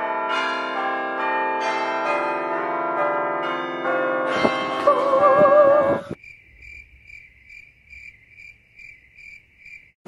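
A run of ringing bell-like chimes, struck one after another and left to sound over each other, with a wavering tone joining about four and a half seconds in. All of it stops abruptly after about six seconds and gives way to a faint cricket-like chirping, a steady high chirp about three times a second.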